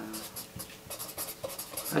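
A pen writing on notebook paper: a quick run of short, scratchy strokes.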